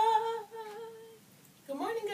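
A woman's voice holding one long sing-song note that rises at the start and then stays steady for about a second before fading. Her voice starts again near the end.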